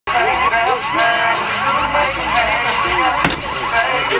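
Indistinct chatter of several voices talking over one another, over a steady low rumble, with one sharp knock about three seconds in.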